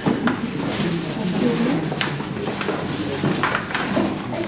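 Indistinct murmur of several people talking at once in a room, with a few short clicks and rustles of things being handled.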